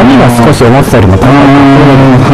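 A man talking in Japanese at a studio microphone, with guitar music playing softly underneath.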